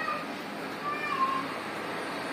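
A cat meowing: two short calls, the second about a second in and falling in pitch.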